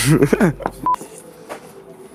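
Voices for the first half second, then a single short electronic beep, one clean high tone, just before a second in. After it, quieter room noise with a faint steady hum.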